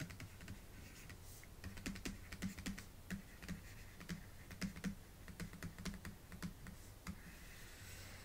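Faint, irregular clicks and taps of a stylus on a pen tablet while words are handwritten.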